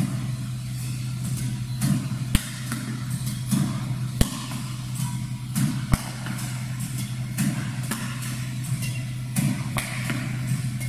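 A Yonex Nanoflare 170 Light badminton racket strikes shuttlecocks: three sharp cracks come a little under two seconds apart in the first half, with fainter knocks around them. A steady low mechanical hum runs underneath.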